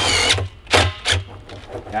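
Cordless drill driving a screw through aluminium screen mesh into a plastic barrel. The motor's steady whine stops about a third of a second in, followed by two short bursts.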